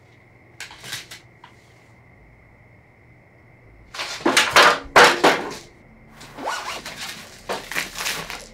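Rummaging: things being handled, shifted and scraped, with a few short rustles about half a second in, then a loud, busy run of rustling and scraping from about four seconds on, and more from about six seconds.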